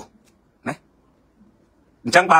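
A pause in a man's speech, mostly quiet, broken by one short breath sound from the speaker about two thirds of a second in.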